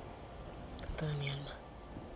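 Quiet scene with a brief, soft hummed murmur from a person about halfway through, over faint background ambience.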